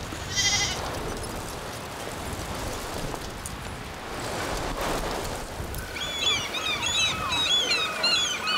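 A sheep or goat of the flock gives one short, high bleat about half a second in. From about six seconds, quick high chirps repeat over a steady high tone.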